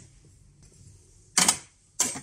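A ceramic cup set down on the metal drip-tray grille of a Smeg espresso machine: a sharp clatter about one and a half seconds in, then another clack near the end.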